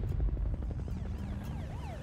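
Deep rumbling drone left by a trailer impact hit, slowly fading. In the second half a faint siren wails up and down.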